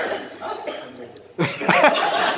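People in a room laughing and reacting: a short sharp burst at the start that fades away, then a loud voiced outburst about one and a half seconds in that runs into laughter.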